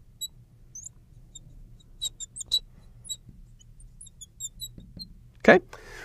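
Marker squeaking against a glass writing board in short, high chirps as words are written and underlined, with a few light taps about two seconds in.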